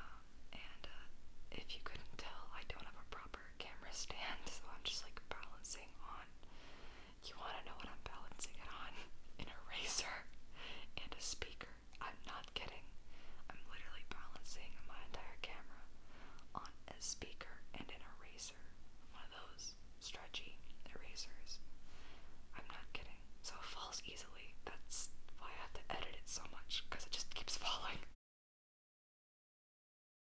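A woman whispering steadily close to the microphone, breathy syllables with sharp hissing 's' sounds.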